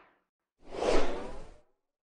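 Whoosh sound effects of an animated logo sting. The tail of one whoosh fades out right at the start, and a second whoosh swells up about half a second in and dies away about a second later.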